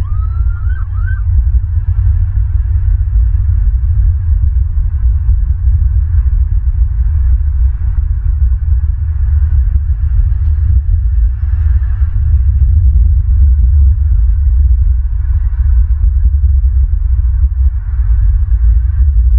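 Wind rumbling and buffeting on an outdoor camera microphone, loud and uneven throughout. In the first second a bird gives one short whistled call that rises and wavers in pitch.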